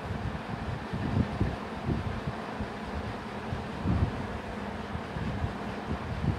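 Steady background noise with irregular low rumbling and no clear foreground sound.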